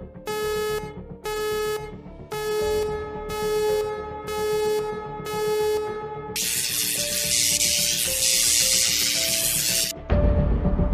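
Background electronic music: short synth chords repeating about once a second, giving way a little past halfway to a loud hissing sweep.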